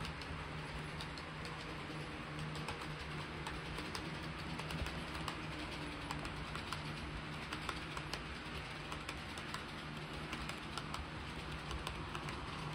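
13 mm gauge model train, an electric locomotive hauling a rake of passenger coaches up a loop-line grade: a steady low motor hum with a fast, irregular ticking of wheels over the rail joints.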